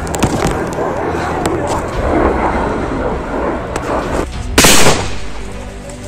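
A single loud blast of a weapon going off, short and sharp, about four and a half seconds in, after a stretch of busy background noise with scattered cracks.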